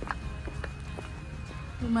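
Sandal footsteps on a concrete walkway, short sharp steps about every half second, over a low steady background.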